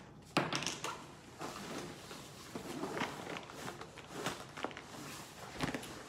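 Handling noise from a nylon range bag as gear is pushed into it: fabric rustling and scraping, with several light knocks of items against one another. The sharpest knock comes about half a second in.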